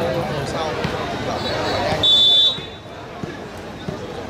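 A referee's whistle gives one short, high blast about two seconds in, the loudest sound here, over voices and chatter from the crowd.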